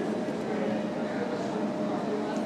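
Steady background room noise with faint, indistinct voices.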